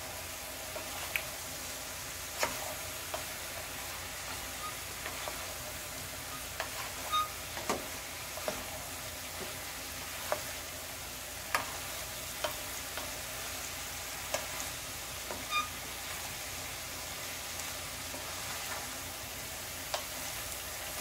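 Sliced bitter melon and ground beef sizzling steadily in a frying pan while a wooden spatula stirs them, knocking against the pan in a dozen or so light, irregular clicks.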